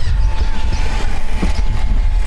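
Ducati Panigale V4 S with the ignition just switched on, engine not yet running: its fuel pump priming with a faint steady whine, under a constant low rumble of wind on the microphone.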